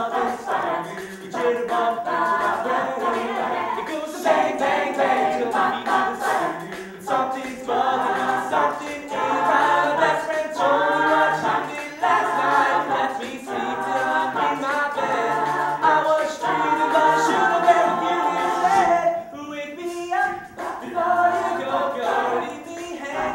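Mixed-voice a cappella group singing an upbeat pop song live, a soloist over the ensemble's sung backing and a pulsing bass line in the voices.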